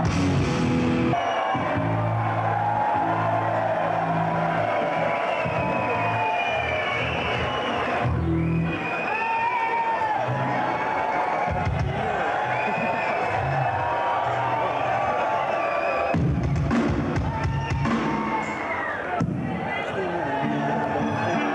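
Hardcore punk band playing a song live: distorted electric guitar, bass and a drum kit, in a thin, full mix.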